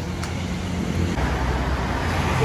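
Steady low rumble of road traffic passing, with two light clicks at the very start.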